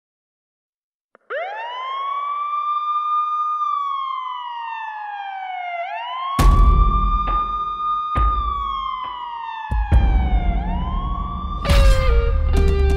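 A siren wailing: the tone rises quickly, holds, then slides slowly down, repeating about every four and a half seconds. About halfway through a deep rumble and several heavy hits join it, and musical notes begin near the end.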